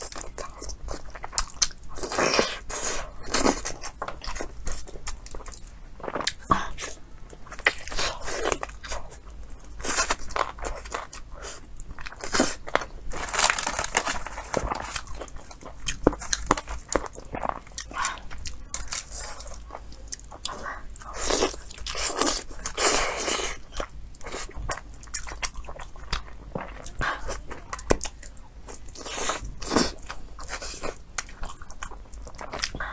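Close-miked eating of roast chicken: a person biting and chewing, heard as a long irregular run of short, sharp mouth clicks and chews.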